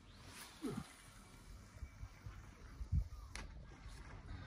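An overhead cast with a sea-fishing rod and fixed-spool reel: a faint swish and hiss of line paying out, fading over the first second or so, with a brief falling voice sound of effort. A low thump and then a sharp click come about three seconds in.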